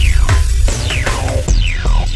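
Electronic music with a heavy bass and a repeating synth sound that sweeps down in pitch about twice a second.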